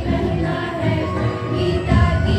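A group of girls singing together in chorus, with notes held and changing in a steady tune.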